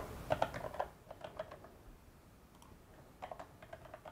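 Faint computer keyboard typing: a quick run of keystrokes in the first second, a few scattered keys, then another short run near the end.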